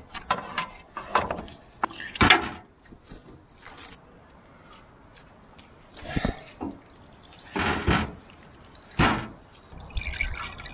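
Scattered knocks and clunks of a tractor battery and metal fittings being handled under the hood: several sharp knocks in the first couple of seconds, the loudest about two seconds in, then a quiet spell and a few more thuds later on.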